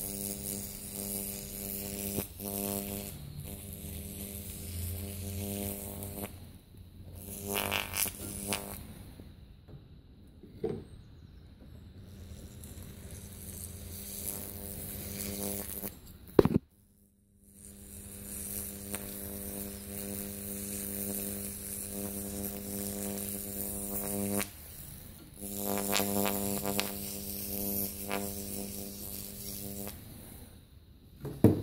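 A home-made electrolytic weld-cleaning unit, a rectifier driving an acid-wetted carbon brush on stainless steel welds, gives off an electrical buzz with a faint sizzle. The buzz cuts out and returns several times. About sixteen seconds in, a sharp loud crack is followed by about a second of near silence.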